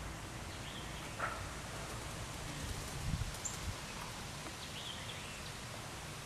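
Outdoor ambience: a steady low rustle of wind and leaves, with a few short faint bird chirps and a brief low rumble about halfway through.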